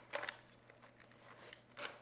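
Packaging of an iPod touch case being opened by hand, off camera: a few faint, sharp clicks and crackles, a cluster just after the start and another near the end.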